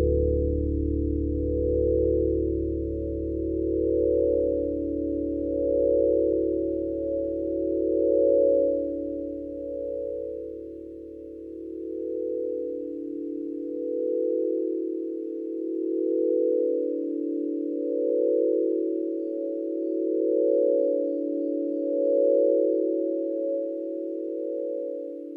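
Ambient background music: a held chord of pure, steady tones that slowly swells and ebbs about every two seconds. A deep bass note under it fades away a little over halfway through.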